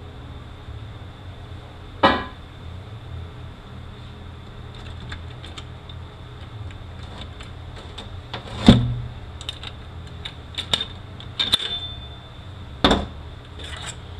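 Metal automatic-transmission parts knocking and clinking as they are handled and pulled apart during a teardown: a few sharp knocks, the loudest about two-thirds of the way in, and a run of lighter clicks after it. A steady low hum lies under them.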